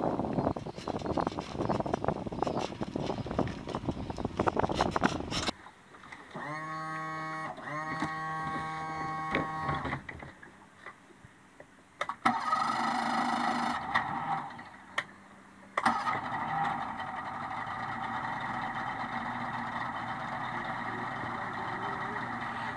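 2004 Yamaha 130 hp V4 two-stroke outboard being started after a couple of months in storage: the electric starter cranks it in two short bursts with a rising whine, and the engine catches a few seconds later. After a brief dip it settles into a steady idle.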